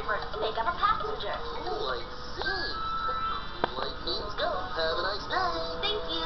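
Children's TV show soundtrack playing through computer speakers and picked up off-screen: music with bright sung and spoken voices.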